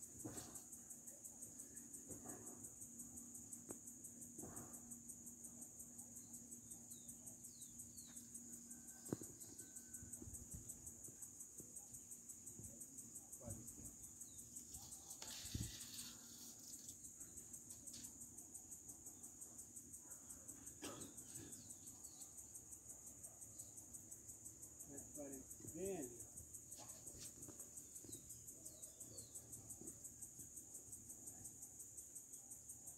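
Crickets chirping in a steady, fast-pulsing high-pitched trill, with a few soft knocks.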